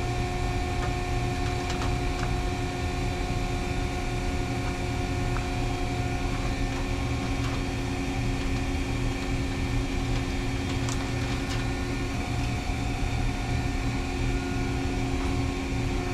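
Steady mechanical hum of running machinery, several held tones over a low rumble, with a few faint clicks near the middle.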